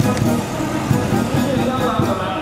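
Music and an announcer's voice over outdoor loudspeakers, with police vans and buses driving slowly past underneath.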